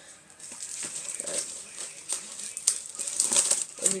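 Cardboard airsoft pistol box being handled and opened: rustling and scraping with scattered small clicks and knocks, busier in the second half.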